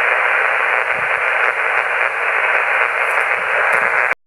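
Amateur HF transceiver receiving on 7.085 MHz lower sideband: a steady hiss of band noise with no voice on the frequency, the pause while a CQ call waits for a reply.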